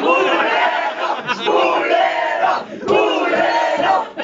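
A small crowd of people packed into a room, laughing and shouting loudly all at once.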